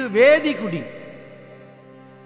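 A steady sustained musical drone holding one pitch with many overtones. A man's voice speaks a short, drawn-out phrase over it in the first second.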